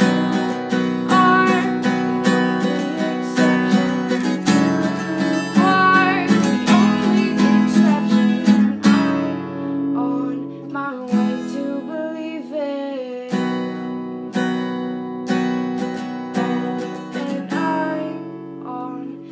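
Acoustic guitar strummed in steady chords while a woman sings over it. About halfway through the strumming becomes lighter and sparser.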